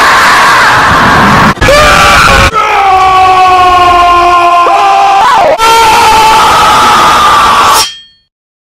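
A roar for the toy dinosaur Rex, a screaming voice boosted until it clips and distorts. It is held almost throughout, broken by three short gaps, and cuts off suddenly at the end.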